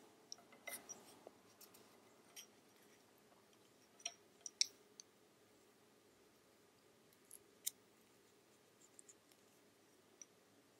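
Faint, scattered clicks of wooden double-pointed knitting needles tapping against each other as stitches are knit together, the sharpest a little over four and a half seconds in and another near eight seconds.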